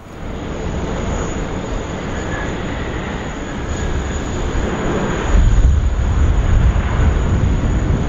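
Boeing 787 Dreamliner's jet engines running at high power as the airliner rolls down the runway. The noise gets louder, with a deeper rumble from about five seconds in.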